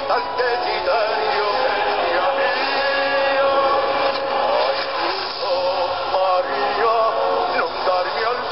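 A man singing a dramatic song in Italian over full orchestral music.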